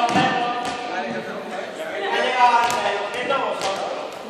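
Several voices talking and calling in an echoing sports hall, with a few short knocks of balls hitting the floor.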